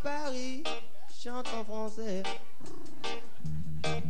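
Live acoustic band music: a voice holds long, sliding notes over a thinned-out accompaniment, and the low guitar rhythm comes back in strongly near the end.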